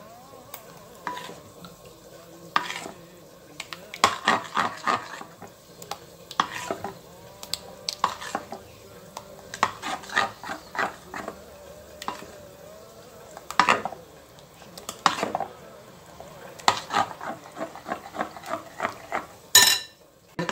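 A metal ladle stirring crêpe batter in a glass bowl, with irregular clinks and scrapes against the glass.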